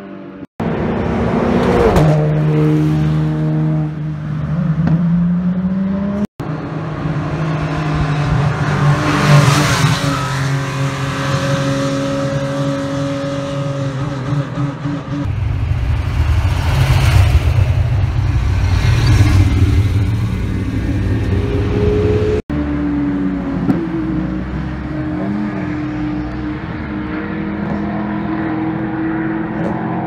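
Racing car engines in a run of short trackside clips. Cars accelerate and pass with rising engine notes, and from about 15 to 22 seconds in there is a deep, loud low rumble as V8-engined Ford GT40s roll along the pit lane. The sound breaks off abruptly three times between clips.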